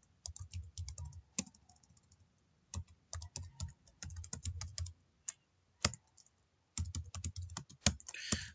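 Typing on a computer keyboard: quick runs of keystrokes, broken by a couple of short pauses.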